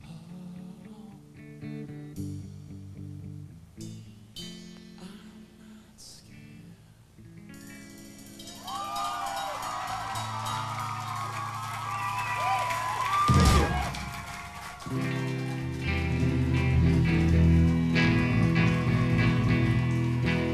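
Electric guitar notes ringing quietly, then a crowd breaks into cheering and screaming about eight seconds in. A single loud thump comes partway through the cheering, and electric guitar chords play on under the crowd near the end.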